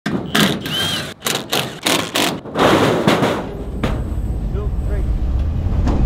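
Cordless driver with a socket backing out crate bolts in a string of short bursts over the first couple of seconds, then the low steady rumble of a forklift engine running from about halfway on.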